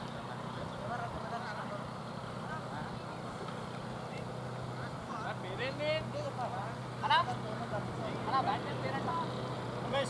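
Distant voices of cricket players calling out briefly across the ground, starting about halfway in, over a steady low hum.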